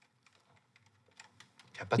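Faint keyboard typing: scattered light key clicks. A man's voice starts answering near the end.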